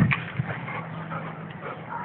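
A Labrador retriever gives a brief, loud vocal sound right at the start, followed by faint scattered small sounds over a low steady hum.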